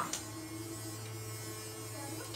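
Steady low electrical hum, a mains hum with a fainter higher tone above it, holding level throughout.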